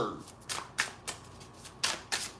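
A deck of reading cards being shuffled by hand: three short, sharp card taps, about half a second in, just after, and near the end.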